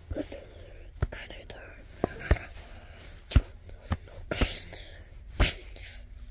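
A person whispering unintelligibly, broken by several sharp knocks or clicks at irregular intervals, roughly one a second.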